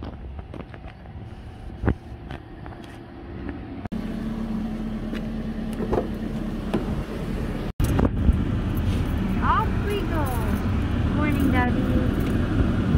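Car sounds in short cuts. First, parking-lot ambience. Then a steady engine hum beside the car and a click about halfway through as the car's door handle is pulled. Then, from about two-thirds in, a car engine running, heard from inside the cabin as a steady low rumble.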